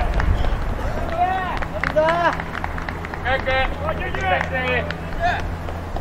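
Football players shouting short calls to each other across the pitch during open play, the voices coming in scattered bursts, with a low steady hum underneath through the middle seconds.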